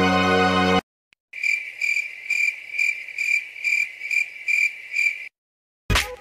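A cricket chirping: a steady run of high chirps, about two a second, lasting about four seconds and starting and stopping abruptly. Music plays briefly before it and comes back at the very end.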